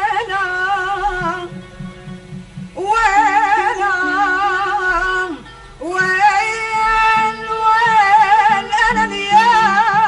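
Woman singing an Arabic song in long held phrases with heavy vibrato, with short breaks between phrases, over instrumental accompaniment with a repeating low pattern.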